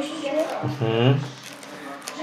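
People talking, with a low voice about half a second to a second in and quieter voices around it. Beneath them, a faint rustle of plastic binder sleeves as trading cards are slipped into their pockets.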